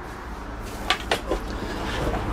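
Caravan lounge table being pulled out on its mount: a few light knocks and clicks close together around the middle.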